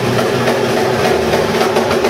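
Loud live metalcore band playing: heavy distorted guitars over drums, with fast drum hits.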